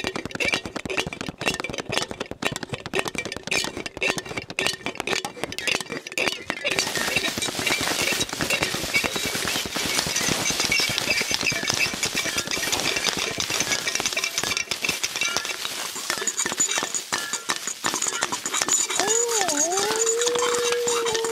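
Recorded album track with no sung words: rapid clinking and tapping for the first few seconds, then a steady hissing wash, with a wavering, sliding tone coming in near the end.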